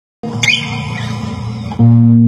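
Acoustic guitar fingerpicked as the song begins: soft notes start a moment in, with a brief high squeak about half a second in. A much louder low bass note rings out near the end.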